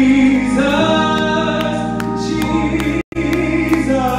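Gospel singing: a man's voice on a microphone, with other voices and sustained chords behind it. The sound cuts out completely for a split second about three seconds in.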